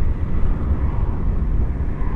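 Riding noise from a Yamaha XJ6 Diversion F motorcycle at road speed: a steady low rush of wind and engine.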